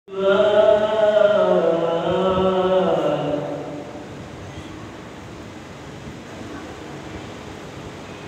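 A man chanting a long, unaccompanied melodic phrase of religious recitation into a microphone, his held notes sliding slowly and dropping in pitch before he stops about three and a half seconds in. After that only a steady low hiss remains.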